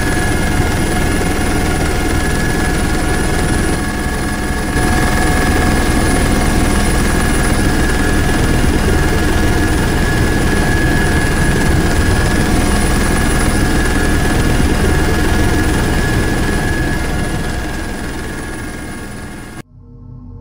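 Helicopter in flight heard from inside the cabin: steady rotor and engine noise with a constant whine, fading over the last few seconds and cutting off near the end.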